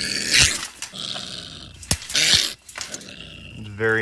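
A canine growling and snarling in harsh breathy bursts, with a sharp click about two seconds in, ending in a longer, deeper growl near the end.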